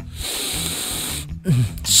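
A person taking one long sniff through the nose, lasting just over a second.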